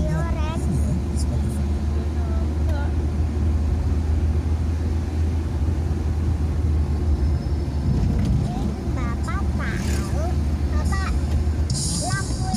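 Steady low engine and road drone inside the cabin of a moving vehicle. Voices come through briefly near the start and again in the last few seconds.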